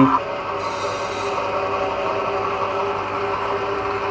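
Small stainless-steel electric screw oil press running at a steady pace while it crushes flaxseed, with a steady motor hum and a grinding rasp from the screw. A brief hiss comes about a second in.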